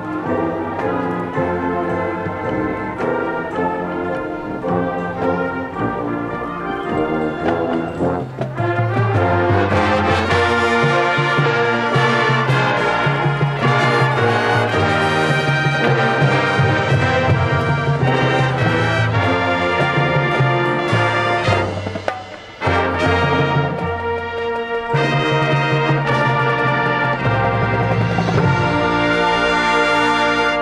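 High school marching band playing its field show, brass to the fore. The music is softer for about the first eight seconds, then swells to full volume, with a brief break about twenty-two seconds in.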